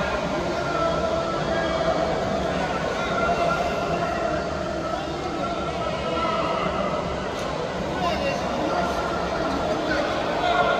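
Indistinct man's voice over an arena public-address system, steady and echoing, giving running commentary on the bout.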